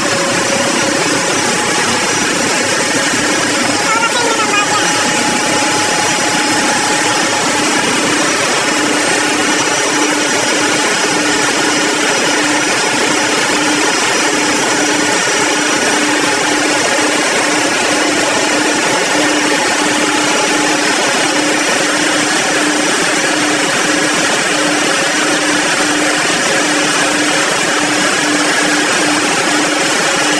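Ship's engine-room machinery running: a loud, steady roar with a constant hum underneath.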